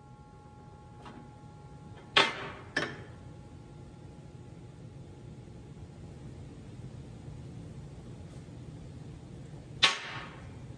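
A steel 1-2-3 machinist block knocking against steel: two sharp clanks a little over two seconds in, about half a second apart, and another just before the end, over a low steady hum.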